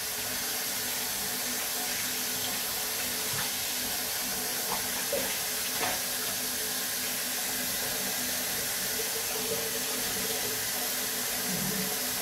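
Water running from a tap into a bathroom wash basin, a steady even rush, with a few small splashes as a wet cat is washed in the basin.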